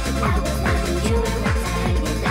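Fast hardcore dance music from a DJ set: a rapid, steady kick drum whose every beat drops in pitch, over a held bass line with synth melody on top.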